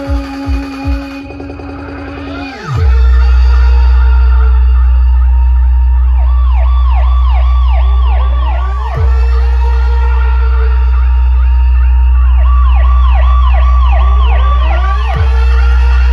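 Electronic DJ sound-check track on a large DJ sound system: a beat and a held tone fall away about two and a half seconds in, then a very deep, loud, steady bass tone takes over. Siren-like synth sweeps repeat over it twice, each run lasting about three seconds.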